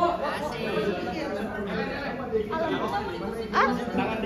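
Many people chattering at once, overlapping voices with no single clear speaker, and a short upward-sliding call near the end.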